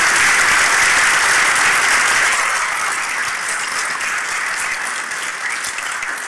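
Audience applauding, loud at first and slowly dying down from about two seconds in.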